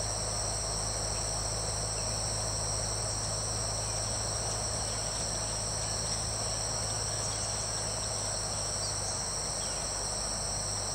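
Steady chorus of insects: a constant high-pitched ringing in several pitches at once, over a low steady rumble.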